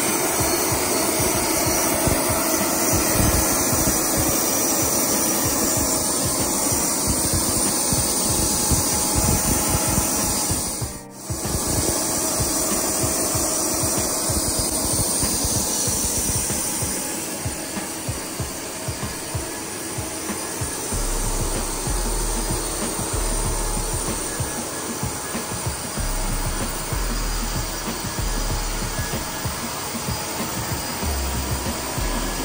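Steady loud rushing noise of an open airfield ramp, with wind buffeting the microphone in uneven low thumps. The noise drops out for a moment about eleven seconds in and is a little quieter in the second half.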